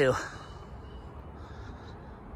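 A man's voice ends a word with a falling pitch right at the start, then only faint steady background hiss with a low rumble.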